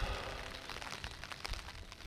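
Rain falling, with scattered sharp drips and taps over a steady patter, fading away toward the end.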